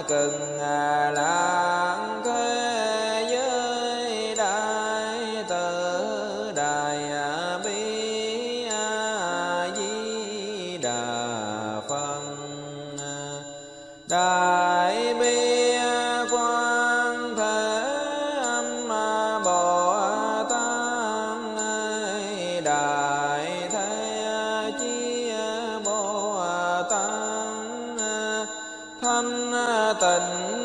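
Vietnamese Buddhist sutra chanting: a voice intoning a melodic recitation over a steady held musical drone. The chanting fades a little past twelve seconds in and comes back abruptly at about fourteen seconds.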